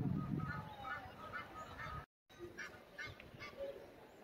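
Geese honking in short, repeated calls, with a brief silent gap about two seconds in and a low rumble in the first second or so.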